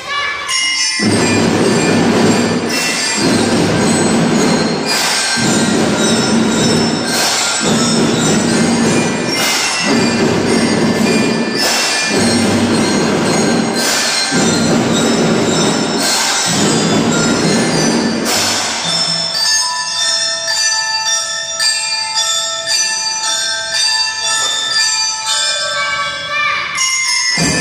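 Children's drum band playing: drums and cymbals in repeated phrases about two seconds long, then, about two-thirds of the way in, mallet instruments ring out a melody of clear bell-like notes over lighter percussion.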